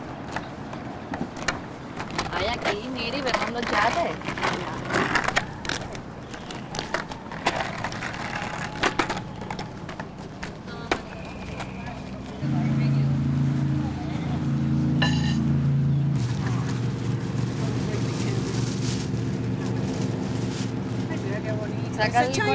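Indistinct voices talking, with scattered clicks and handling knocks. About halfway through, a steady low hum starts and carries on to the end.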